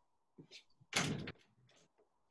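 A door closing with a short thud about a second in, with a few fainter knocks around it.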